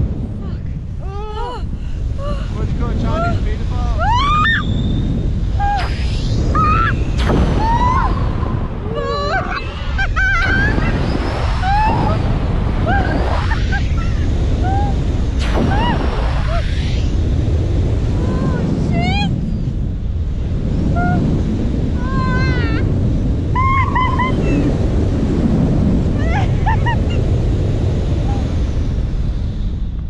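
Strong wind rushing over the microphone as a tandem paraglider swings through acrobatic 'roller coaster' manoeuvres, with a woman screaming and shrieking in many short cries throughout.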